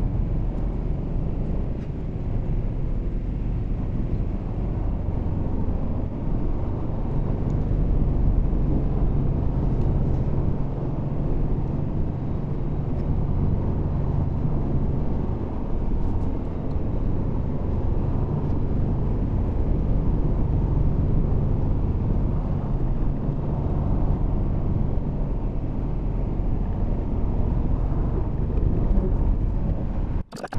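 Tyre and road noise heard inside a Tesla electric car's cabin while it drives: a steady low rumble.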